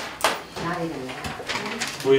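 A person speaking quietly and indistinctly, with a click just after the start.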